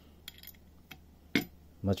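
Light metallic clicks and a sharper clink as the small retaining screw and guide bearing of a router bit are worked by hand and the bit is handled: a few faint ticks, then one louder click about two-thirds of the way through.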